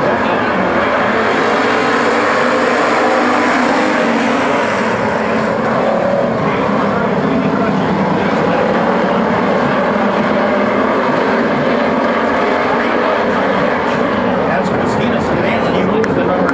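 A pack of WISSOTA street stock race cars running together on a dirt oval, their V8 engines making a steady, loud, blended sound.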